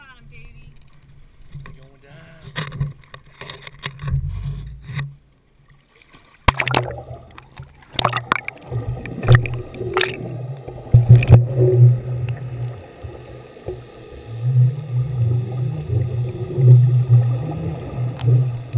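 A GoPro camera in its waterproof housing on a deep-drop rig goes into the sea with a sudden sharp hit about six and a half seconds in. After that comes muffled underwater rushing with scattered knocks as the camera sinks on its line.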